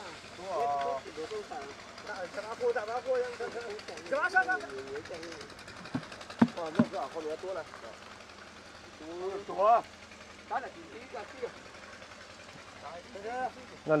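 Several people talking quietly in the background, with a couple of sharp knocks about six seconds in from trowels working wet concrete against stone edging.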